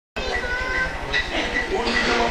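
Indistinct voices over a low, pulsing electrical hum, with scattered short high tones, in the moments before the band starts playing.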